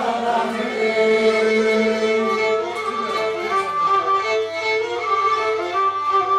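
Pontic lyra (kemenche), a small upright bowed fiddle, playing a melody with several steady notes sounding together.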